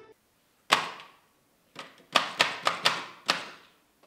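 Sharp knocks: a single one, then about a second later a quick, uneven run of about six more, each with a short ringing tail.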